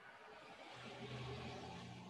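A faint passing motor vehicle: a low hum with a hiss that swells to a peak about a second in and fades away.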